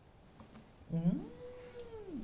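A single long vocal call about a second in, sliding up in pitch, held for most of a second, then falling away.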